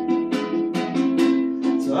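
Song intro played on a plucked string instrument, single notes picked about four a second over ringing chord tones; a voice begins singing at the very end.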